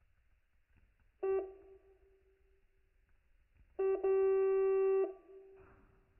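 Electronic beeper of a digital torque screwdriver: one short beep about a second in, then a long steady beep of about a second starting near four seconds, as the tool is turned to break a red-threadlocked nut free. A brief rustle of handling follows near the end.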